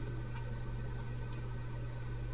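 Room tone in a pause between speech: a steady low hum with faint background hiss, and nothing else happening.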